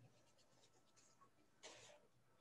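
Near silence, with one faint, short brushing sound near the end: a wet paintbrush stroking across watercolour paper.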